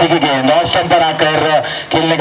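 A man's voice speaking continuously: live match commentary.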